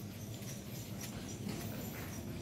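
Faint footsteps on paving stones, a few light irregular clicks over a low steady background hum.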